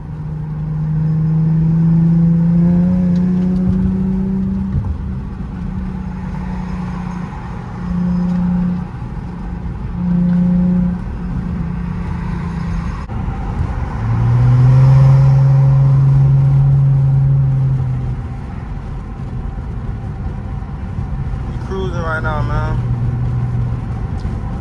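Infiniti G35x's V6 engine pulling under hard acceleration: its note climbs over the first few seconds and holds, swelling louder twice. About halfway through the pitch drops, as on an upshift, and the engine pulls at its loudest for a few seconds before easing off.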